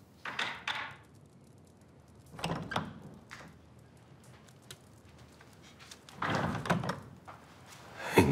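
A wooden door being opened and shut, with dull thunks about two and a half seconds in and again a little after six seconds.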